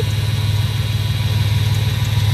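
1967 Dodge Coronet engine idling steadily with an even low hum. The owner thinks it no longer has the serious miss from a dead cylinder and hopes a couple of gallons of premium fuel cleared it up.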